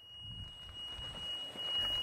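A continuous high-pitched electronic tone, one unbroken note, over a low rumble.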